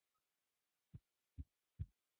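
Near silence broken by three short, soft low thumps about half a second apart, starting about a second in, each a little louder than the one before.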